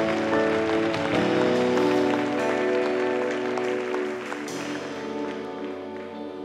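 Soft background music from a worship band: held chords that slowly fade away.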